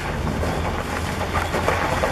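Nissan Frontier pickup's engine working hard as it climbs a steep, muddy, broken cobblestone street, with a steady low rumble.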